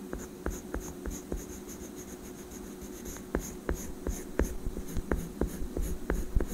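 Oil pastel rubbing across drawing paper in short, quick strokes, about three a second, close to the microphone. The strokes are fainter for a moment in the middle.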